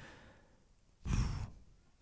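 A man sighs once, a breathy exhale about a second in that fades out over about half a second.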